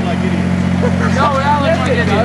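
People talking over a steady low drone, like an idling engine or machine running nearby.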